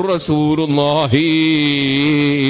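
A man chanting in a melodic, drawn-out voice: a short sliding phrase, then one long note held steady from about a second in.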